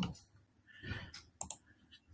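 Two quick, sharp clicks at a computer, about a second and a half in, as the user works the mouse and keyboard, with a soft, short rustle just before them.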